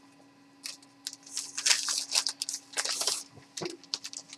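Plastic wrap being torn and crinkled off a vinyl LP: a run of irregular crackling rips from about half a second in until just past three seconds.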